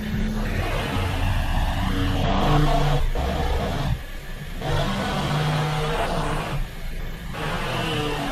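A Volkswagen car engine idling, heard from inside the cabin, while the steering wheel is held at full right lock.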